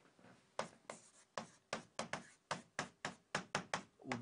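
A pen tip writing on a board: a quick run of short, faint taps and strokes, about four a second, as a formula is written out by hand.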